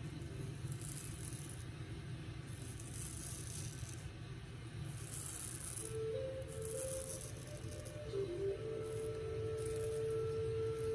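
Straight razor scraping through lathered stubble on the cheek: about five separate strokes, each a high-pitched rasp lasting roughly a second.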